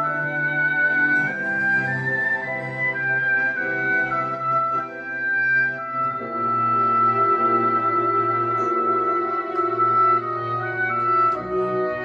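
Orchestral ballet music: a melody of long held notes stepping up and down over sustained low chords.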